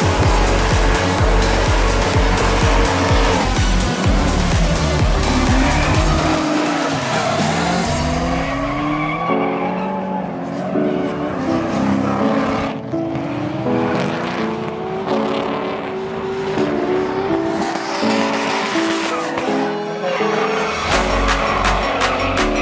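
Drift cars sliding, with engines revving up and down and tyres squealing, under electronic dance music with a steady bass beat. About halfway through, the car sounds give way to the music's synth melody.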